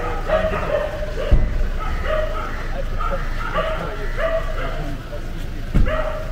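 A dog barking repeatedly, with short, pitched barks coming roughly once every second.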